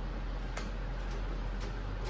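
Faint, light clicks roughly every half second, over a steady low hum of room noise.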